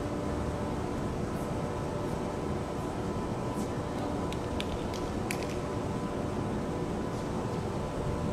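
Steady background hum and hiss with several constant low tones, with a few faint short high clicks about halfway through.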